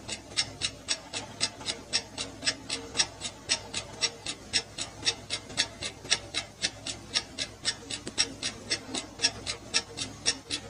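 Countdown timer sound effect: a clock ticking evenly, about four ticks a second.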